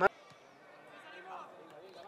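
Faint outdoor ambience from a football pitch during a gap in the commentary, with a faint distant voice calling out just past the middle. A sharp click at the very start marks an edit cut.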